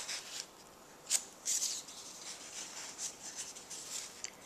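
Curled strips of card stock rustling and rubbing softly as they are handled and layered by hand, with a sharper paper click at the very start and another about a second in.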